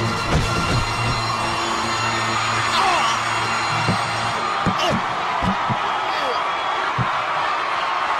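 Fight-scene film soundtrack: background music under a shouting arena crowd, with several sharp hit sounds in the second half.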